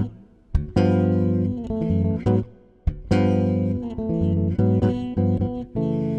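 Extended-range electric bass played solo, plucked chords left to ring, with two brief pauses between them: an instrumental break with no voice.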